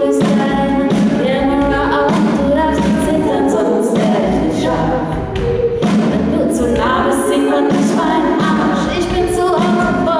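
A female vocal group singing live in close multi-part harmony, several voices layered together over a low bass line.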